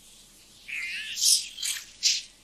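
Sound effects from the anime's soundtrack. A brief high wavering sound comes about a third of the way in, followed by two short, loud hissing rushes near the end.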